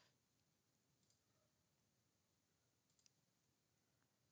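Near silence with faint computer mouse clicks: one about a second in and a quick pair about three seconds in.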